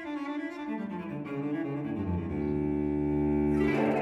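Background music of slow, sustained low notes that grow gradually louder, with a deeper bass note coming in about halfway through.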